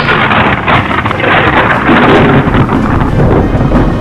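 Sound-design storm effects: strong wind with breaking sea waves, loud and dense.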